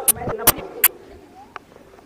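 A man's voice speaking briefly, with several sharp clicks in the first second, then a pause.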